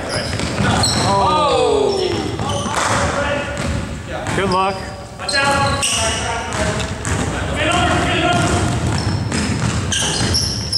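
Indoor basketball game on a hardwood court: sneakers squeaking in short high chirps, a basketball bouncing, and players calling out, all echoing in a large gym. One drawn-out falling shout comes about a second in, with more calls in the middle.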